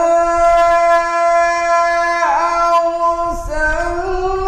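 A man reciting the Quran in melodic chant, holding one long drawn-out note for about three seconds, then moving up to a higher note near the end.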